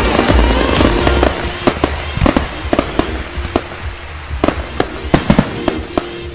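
Background music under a dense crackling for about the first second, then irregular sharp bangs, a dozen or so, each with a short ring after it.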